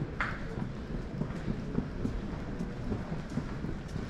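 Steady low rumble of terminal ambience and camera movement, with irregular faint knocks and a short hiss about a quarter second in.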